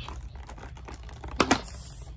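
Scissors and cardboard doll packaging being handled, giving light irregular clicks and rustles, with a brief louder sharp sound about one and a half seconds in.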